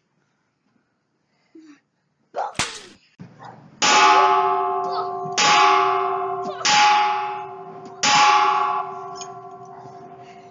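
A bell-like metallic clang struck four times, about a second and a half apart, each ringing on and fading slowly before the next.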